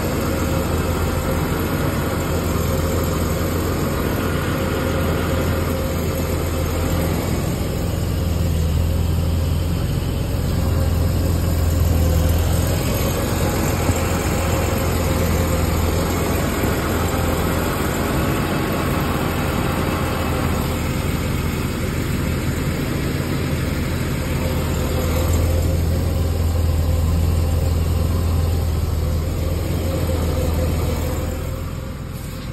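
Car engine idling steadily, a low, even hum heard from underneath the car.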